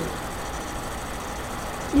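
Steady low hum and hiss of room background noise, with no clear event in it.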